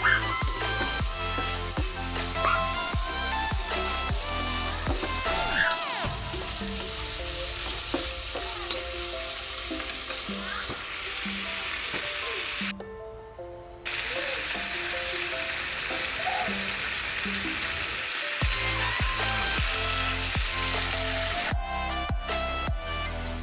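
Tofu cubes, chili peppers and onion sizzling in a wok as they are stir-fried in sauce, with background music throughout. The sizzle breaks off for about a second near the middle.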